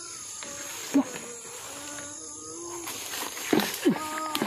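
Steady high-pitched buzzing of insects in the undergrowth, with faint distant voices wavering beneath it and a short sharp sound about a second in.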